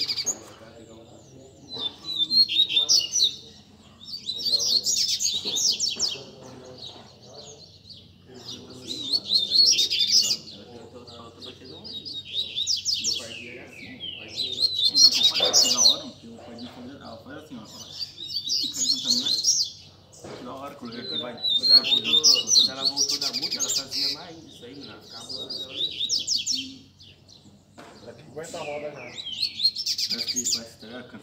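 Caged double-collared seedeaters (coleiros) singing: about a dozen short, fast, high-pitched bursts of song, one every two to three seconds, as the birds rouse one another in a warm-up circle.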